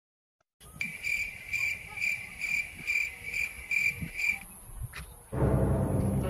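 A cricket chirping in a steady rhythm, about two high-pitched chirps a second. It stops a little after four seconds in. About a second later a loud, ominous low music drone starts suddenly.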